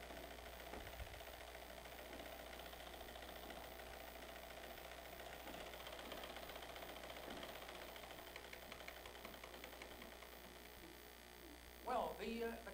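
Faint room noise with a steady low hum.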